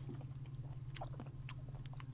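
Faint, close-miked wet mouth clicks and smacks of someone sucking on and chewing raw octopus tentacles, over a steady low hum.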